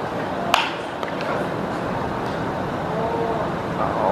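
Baseball bat striking a pitched ball: a single sharp crack about half a second in, the contact that puts the ball in play as a grounder to third base.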